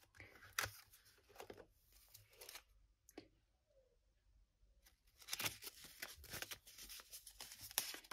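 Paper banknotes rustling as they are handled at a ring-binder cash envelope: a few scattered rustles and soft clicks, a short quiet gap, then a stretch of steady rustling as the bills are leafed through.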